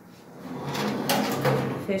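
Oven door of an Atlas Agile Up Glass gas stove being swung closed on its hinges: a run of scraping and knocking sounds that builds from about half a second in and lasts over a second.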